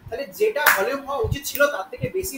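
A person speaking continuously, with a brief sharp sound, like a tap or knock, about two-thirds of a second in.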